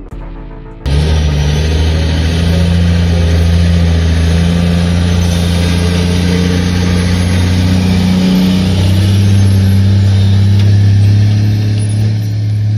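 Caterpillar articulated dump truck's diesel engine running as the truck drives up to and past close by, a deep steady engine note that starts abruptly about a second in and rises in pitch a little past two-thirds of the way through.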